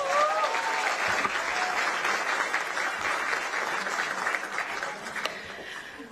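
Audience applauding, with a few brief voices calling out in the first second or so. The clapping thins out toward the end.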